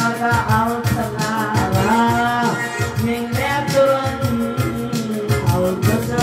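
Electronic arranger keyboard playing a Turkmen folk tune live: a lead melody that bends and slides between notes over a steady, fast accompaniment beat.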